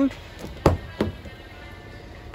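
Mazda CX-90 rear door unlocking and its latch releasing as the handle is pulled: two sharp clicks about a third of a second apart, the first the louder.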